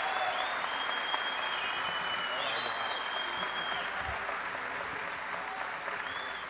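Theatre audience applauding steadily at the end of a performance, easing slightly toward the end.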